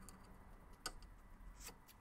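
Near silence with three faint clicks, one a little under a second in and two near the end, from handling the tape and a cutting tool.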